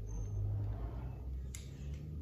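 Low steady rumble, strongest in the first second, with one light click about one and a half seconds in.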